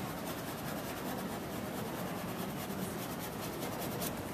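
Paintbrush loaded with oil paint scrubbing and dabbing against a canvas: a quick run of short, scratchy strokes.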